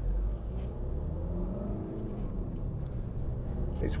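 Audi Q3's 2.0 TDI four-cylinder turbodiesel heard from inside the cabin, pulling the car round and out of a roundabout, a steady low rumble whose note rises for a moment around the middle.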